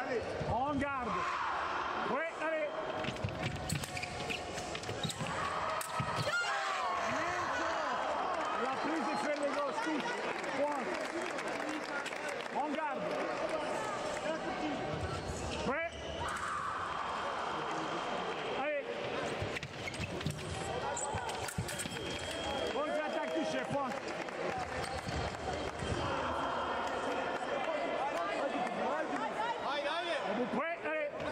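Sports-hall ambience: indistinct voices echoing in a large hall, with thuds of fencers' feet on the piste.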